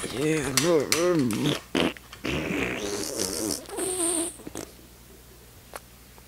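A man's voice making wordless vocal noises for a mock fight, in two stretches with a pitch that rises and falls over and over. A single sharp click comes near the end.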